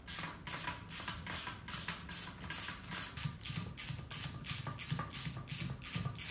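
Hand ratchet clicking in an even rhythm, about four clicks a second, as bolts are run down on a cast differential casing.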